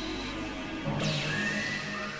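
Experimental electronic synthesizer music: layered drones and tones, with a sharp high glide falling in pitch about halfway through, then low sustained notes.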